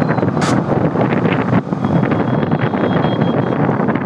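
Wind rushing over a rider's microphone on a moving two-wheeler in traffic, with engine and road noise beneath. It is steady throughout, with a brief hiss about half a second in.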